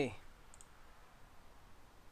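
A faint computer mouse click, a quick double tick about half a second in, over quiet room hiss.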